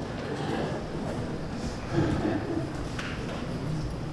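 Faint voices in a quiet hall, with a light knock about three seconds in.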